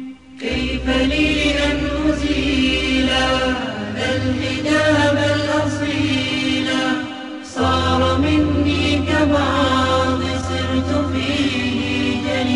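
Islamic nasheed: voices chanting a melody over a steady low drone, with a brief break about seven and a half seconds in.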